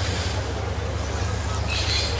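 A steady low rumble from a vehicle, with no sudden events.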